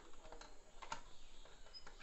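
Faint, scattered small clicks and scrapes of a screwdriver turning a screw into a plastic switch box, the tip ticking in the screw head.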